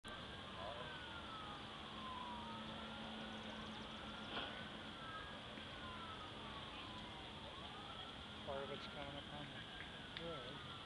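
Two emergency sirens wailing, their slow rising and falling tones overlapping and crossing each other. A person says a word near the end.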